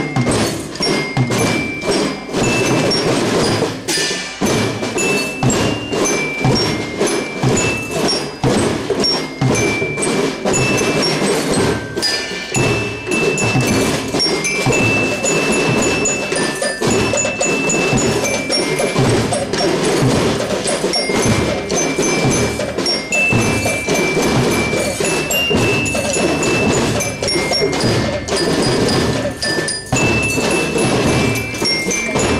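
Children's drum band playing a marching tune: snare and bass drums keep a steady beat of about two strokes a second under a high melody line.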